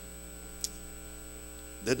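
Steady electrical mains hum from a microphone and sound system, with a thin high tone above it, and one short faint click a little over half a second in.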